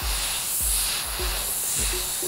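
Steady hiss of a glassworking bench torch's flame, under background music with a low beat about every 0.6 s.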